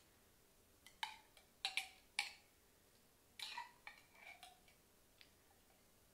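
Faint, irregular clicks and taps of a table knife against a jelly jar as jelly is scooped out and dabbed onto bread slices.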